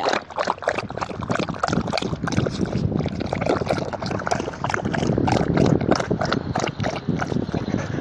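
A dog lapping water from a basin, a quick, steady run of wet laps close to the microphone.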